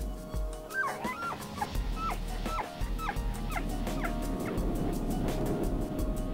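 Tule elk bull bugling in the rut: a run of about eight high yelping calls, each falling in pitch, roughly two a second, turning to lower, rougher calling in the second half.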